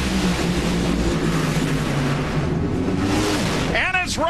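Two nitromethane-burning NHRA Funny Car drag racers making a quarter-mile pass side by side: a loud, steady engine roar whose pitch drops near the end as the run finishes.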